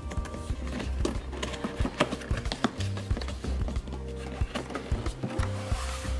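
Background music with a steady bass, over the clicks, knocks and rustles of a cardboard box being opened by hand: tape seals peeled, flaps and lid lifted.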